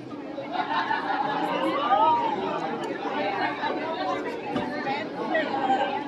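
Outdoor crowd chatter: many people talking at once, several voices overlapping.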